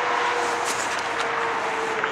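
Steady hum and hiss of a motor vehicle running close by, even throughout with one constant tone underneath.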